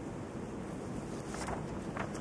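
A pause in speech filled by a steady, even background hiss: the room tone of the hearing's sound feed.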